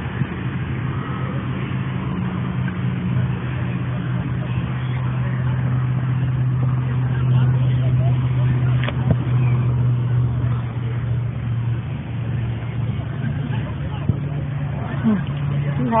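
Steady low engine-like hum with faint distant shouts and a single click about nine seconds in.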